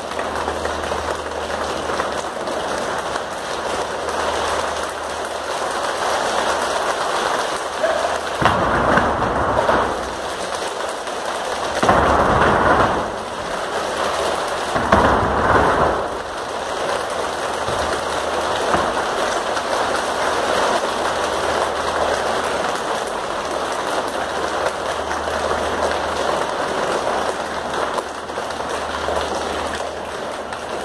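A staged rain effect: a steady, dense rain-like patter that swells into three louder rushes, about 8, 12 and 15 seconds in, before settling back to the steady patter.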